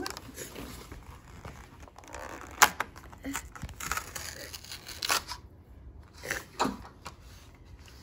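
Cardboard door of an advent calendar being picked and torn open by fingers: scattered scratching and tearing with sharp clicks, the loudest click about two and a half seconds in.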